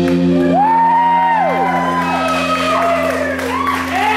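Electric guitar chord held and ringing out through the amp as the song ends, a steady drone. From about half a second in, several overlapping whoops rise and fall over it.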